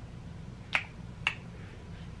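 Two short, sharp clicks about half a second apart, over a faint steady low hum.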